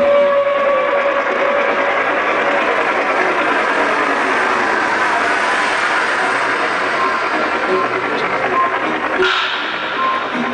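Loud live music from a stage show, a dense, steady wash of sound heard from the audience in a large arena.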